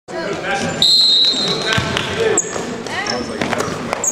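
Basketball thudding on a hardwood gym floor amid spectators' voices echoing in the hall. Near the start a loud, steady, high squeal lasts about a second, and shorter high squeals follow later.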